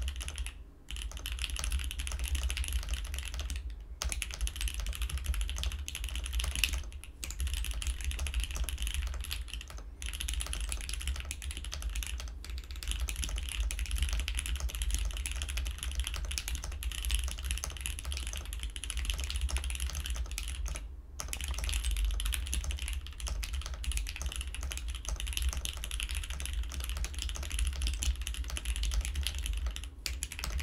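Continuous fast typing on a mechanical computer keyboard: a dense clatter of key presses, broken by a handful of brief pauses.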